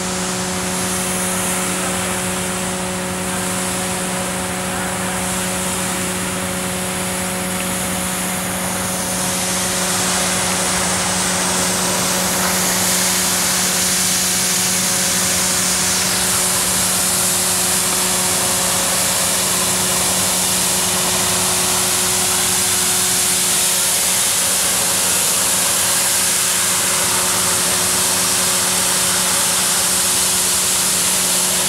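Fiorentini EcoSmart ride-on floor scrubber-dryer running, its brush and suction motors giving a steady hum under a broad hiss. The sound grows louder about ten seconds in.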